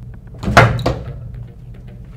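A heat press worked by hand: one loud clunk from the press about half a second in, then a few faint clicks and handling sounds.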